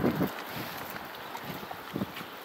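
Wind buffeting the microphone over footsteps on a wet, slushy paved path. There is a loud low thump right at the start and a shorter one near the end.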